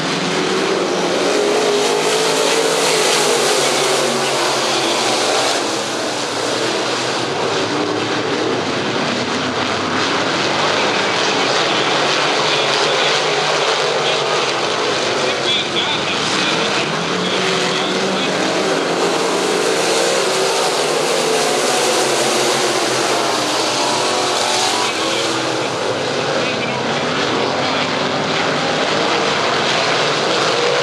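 A pack of B-Mod dirt track race cars at racing speed, their engines loud throughout and repeatedly rising and falling in pitch as the cars sweep through the turns and down the straights.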